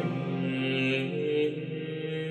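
Unaccompanied Gregorian chant in Latin: voice sustaining long held notes of a plainsong antiphon, moving stepwise between a few pitches.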